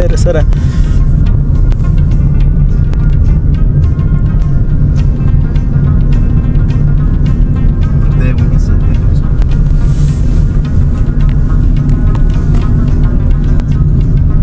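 Heavy low rumble of a car driving, heard inside the cabin, with music and singing playing over it.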